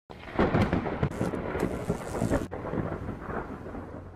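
Thunder sound effect: a loud crackling clap for the first couple of seconds, breaking off suddenly, then a lower rumble that slowly fades.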